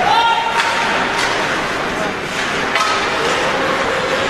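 Ice hockey rink sound: a steady wash of skating and arena noise with a few sharp clacks of stick on puck, and a voice held on one note at the start.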